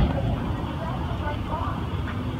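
Steady low outdoor rumble, opening with one sharp click.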